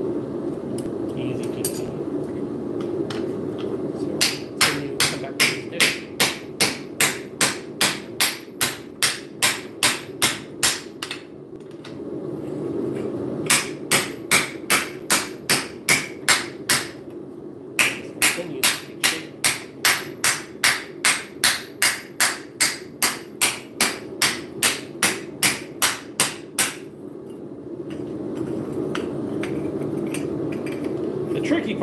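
Hand hammer striking a steel sheet over a round dishing tool held in a vise, forging it into a bowl. The blows are sharp and metallic, about three a second, in three runs with short pauses between.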